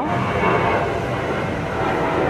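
Steady rumbling background noise with faint held tones and no sudden events.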